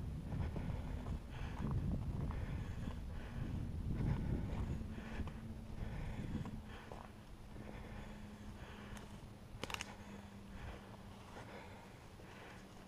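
Footsteps pushing through brush and leaf litter at a steady walking pace, over a low rumble that dies away about halfway through; a single sharp click comes late on.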